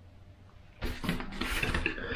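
Thin metal coat-hanger wire and steel pliers being handled on a wooden tabletop: light clinks, taps and rustles, starting about a second in after a quiet moment.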